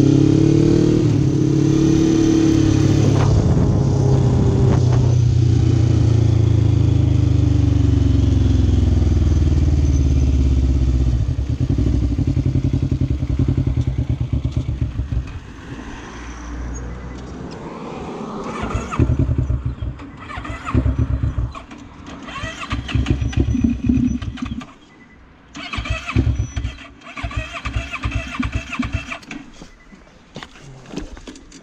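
Sport quad's single-cylinder engine running loud under way, its pitch falling as it slows, then faltering about halfway through. It follows with several short, irregular bursts of cranking and sputtering that don't keep it running: the engine is failing.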